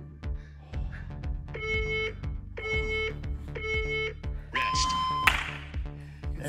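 Interval-timer countdown beeps: three short beeps a second apart, then one longer, higher beep marking the end of the exercise interval, over background music with a steady beat.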